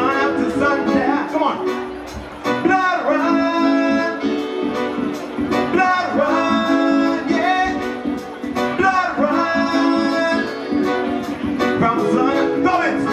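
Live reggae band playing: sung vocals over guitar and a steady drum beat.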